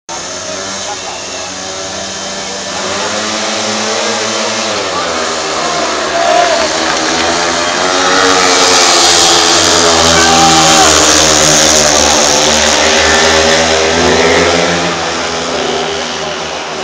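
Speedway motorcycles racing around the track: several 500 cc single-cylinder methanol-burning engines revving, their pitch rising and falling as the riders throttle through the bends. The sound grows louder as the bikes come past, is loudest through the middle, and fades a little near the end.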